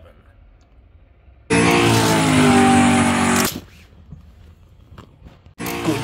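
A loud race-car engine revving sound effect, about two seconds long, that starts and cuts off abruptly. Near the end, a sharp click as the plastic Hot Wheels starting gate is released.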